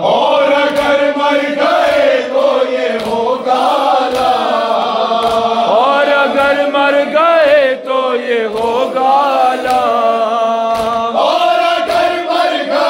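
A group of men chanting an Urdu noha, a mourning lament for Imam Husayn, in unison without instruments, in long drawn-out lines with wavering pitch. A dull beat keeps time beneath the voices about once a second.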